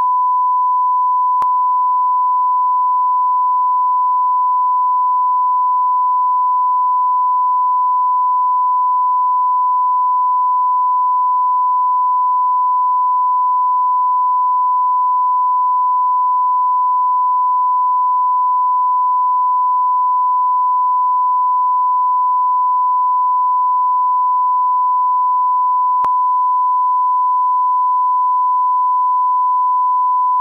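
Steady 1 kHz line-up tone, a single pure tone held at a constant level. It is the audio reference signal that goes with colour bars at the head of a broadcast programme, used to set and check audio levels.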